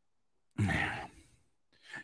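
A man's short sigh into a close microphone, about half a second in and lasting about half a second, as he pauses mid-sentence searching for words.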